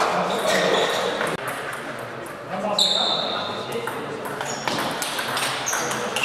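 Table tennis in a large sports hall: the ball clicking off bats and tables in rallies, with voices in the hall and a few short high-pitched squeaks.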